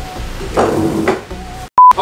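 A short, loud, pure electronic beep with dead silence on either side, cut into the soundtrack near the end. Before it there are faint mumbling and handling sounds.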